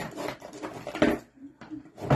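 A plastic mailer package being handled and rustled, with a sharp knock about a second in.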